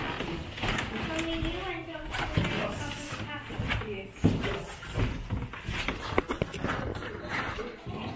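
Indistinct talk of several people in a room, with a few sharp knocks in the second half.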